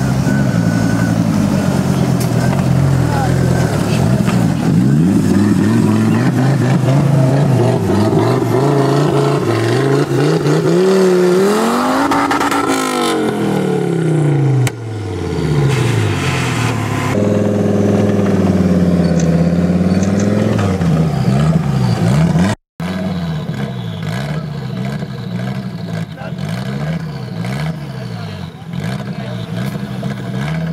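Engine of a Suzuki SJ-based off-road trial special revving up and down again and again as it crawls over obstacles, its pitch rising and falling in long sweeps.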